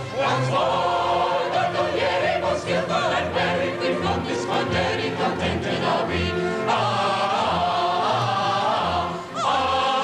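A large mixed chorus singing a light-opera stage number together, with instrumental accompaniment that has regularly repeated low bass notes.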